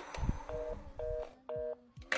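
Telephone earpiece beeps: three short two-note electronic beeps about half a second apart, after a dull low thump.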